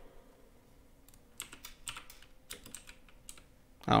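Faint, irregular keystrokes and taps on a computer keyboard, a scattered series starting about a second in and stopping shortly before the end.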